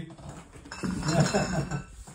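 Kitchen clatter of dishes and utensils clinking, with a voice talking quietly in the background from about a second in.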